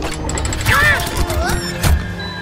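Cartoon sound effects over background music: a key clicking in a treasure chest's lock, with another sharp click near the end as the chest is set to open. A short high vocal sound comes in between.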